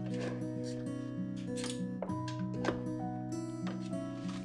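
Background music: soft, held notes over a steady low bass, the melody shifting every half second or so.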